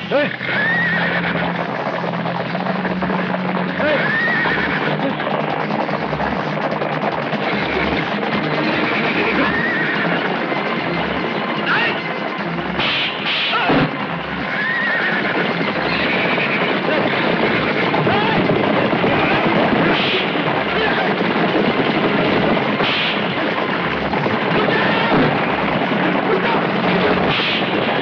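A herd of horses galloping, hooves drumming in a dense, steady clatter, with horses neighing several times over it.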